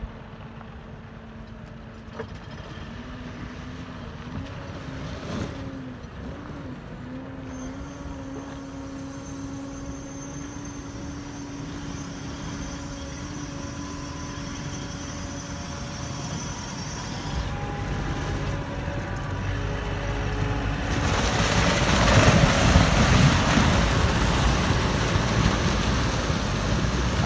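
Sherp amphibious ATV's diesel engine running steadily, its pitch rising slightly about three seconds in. About 21 seconds in, a loud rush of water and ice takes over as the Sherp's tyres churn through broken lake ice.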